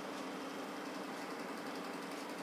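Steady low-level hum with a single constant tone over an even hiss: background room noise.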